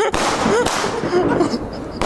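Fireworks: a sharp bang at the start, then a dense run of crackling pops as a firework rocket climbs and bursts.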